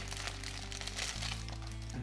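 Clear plastic bag crinkling as a phone case is slid out of it, over background music with sustained low notes.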